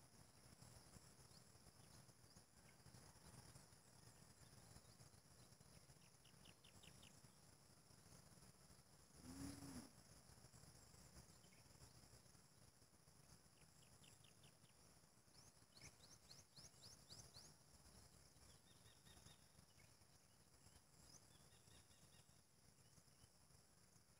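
Near silence: faint open-air pasture ambience with a few faint high chirping trills, and one short low animal call about nine and a half seconds in, the loudest sound.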